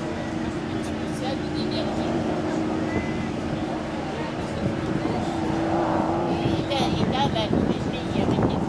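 A steady engine hum holding one pitch for about seven seconds, then stopping, over outdoor voices and chatter.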